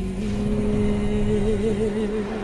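Pop ballad with a female singer holding one long note that wavers into vibrato a little past the middle, over a soft instrumental backing.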